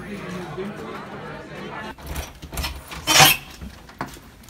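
Busy restaurant dining room: a murmur of overlapping voices with dishes and cutlery clinking, and a sharp louder clatter about three seconds in.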